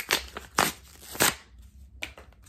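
A blind-bag toy packet being torn open by hand: three loud rips about half a second apart, then softer crinkling of the packet near the end.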